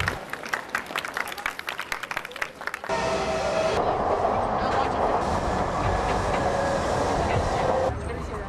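A rapid run of clicks for about three seconds, then a crowded train or subway car: a dense babble of many voices over the steady running noise of the carriage.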